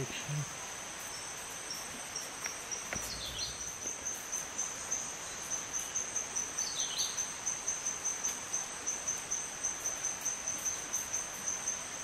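Forest insects chirring in a steady high band that settles into a regular pulse of about four a second. Two short falling whistles sound about three and seven seconds in.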